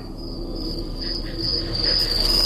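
A steady high-pitched trilling tone over a low hum, slowly growing louder.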